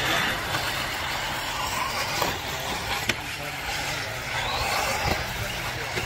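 1/8-scale off-road RC buggies running on a dirt track, their motors giving a steady buzz, with a few short clicks.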